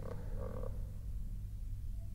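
Steady low electrical hum from the recording chain, with a faint short sound in the first half-second.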